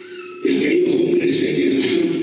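A man's voice shouting loudly into a handheld microphone through a PA system, starting about half a second in. A steady low held tone sounds underneath.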